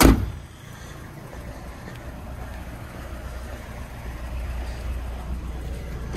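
Steady low outdoor rumble with a faint even hiss above it, growing slightly louder in the last couple of seconds, with no distinct event.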